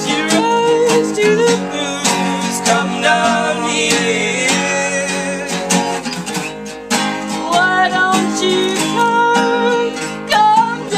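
Live acoustic folk song: two acoustic guitars strummed together, with voices singing over them.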